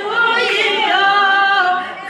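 Group of voices singing together without instruments, holding long notes that bend and slide in pitch.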